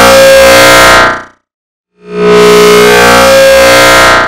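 The 'You're in my chair!' voice clip stacked and repeated so many times that the speech has fused into a very loud, distorted drone of steady pitches. The first block of it fades out about a second in, and after a brief silence the next starts at about two seconds.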